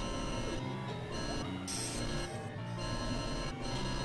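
Experimental electronic drone music: layered steady synthesizer tones over sustained low notes, with a bright hiss on top that cuts out briefly about four times.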